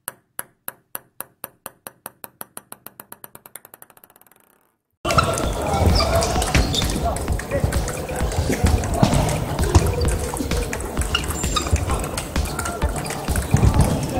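A table tennis ball bouncing and settling: sharp clicks that come faster and fainter until they die out after about four and a half seconds. About five seconds in, the noise of a busy table tennis hall cuts in suddenly, with balls clicking at many tables and voices.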